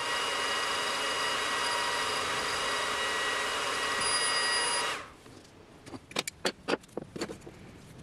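An xTool laser engraver running over a wooden plaque: a steady, loud hiss with a few high whining tones that cuts off suddenly about five seconds in. A second later comes a quick run of short rubbing or scraping strokes.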